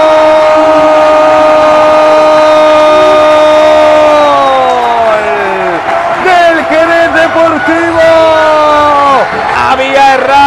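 Football commentator's drawn-out goal cry, "gol" held on one steady note for about four seconds before its pitch slides down, then excited wavering shouting with a second held note that falls away near the end.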